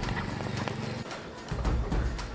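A Royal Enfield single-cylinder motorcycle engine idling with a steady, fast low thump, under background music.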